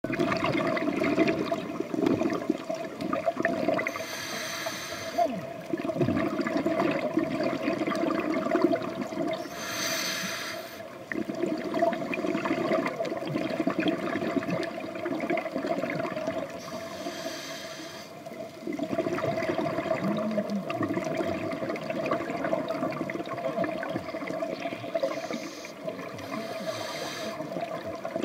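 Scuba diver breathing through a regulator underwater: four bursts of rushing exhaust bubbles, a few seconds apart, over a continuous watery rumble.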